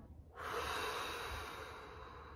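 A woman's long, slow deep breath out through the mouth, heard as a soft rush of air that starts about a third of a second in and slowly fades away.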